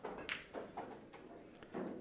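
Pool balls clicking on a shot: the cue tip strikes the cue ball, and the cue ball hits the 9-ball, which is pocketed for the game. There are a few sharp clicks in the first second or so.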